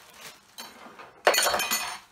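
A plastic bag crinkling loudly for about half a second as it is picked up and handled, after a few lighter rustles.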